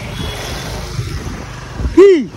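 Steady wind and road noise from riding a motorbike, with a low engine rumble underneath. A loud shout with falling pitch starts right at the end.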